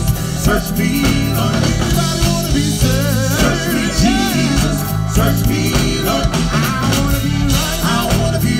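Gospel vocal group singing live with a band of keyboard, electric bass and drums, through a stage PA. Strong bass and a steady drum beat sit under the voices, and the lead singer's voice wavers with vibrato about halfway through.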